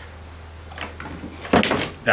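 A red battery charger set down on a workbench: a sharp clunk about one and a half seconds in, after a few faint handling clicks, over a steady low electrical hum.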